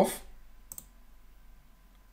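A single sharp computer mouse click about two-thirds of a second in, pressing a download button, with a much fainter tick near the end.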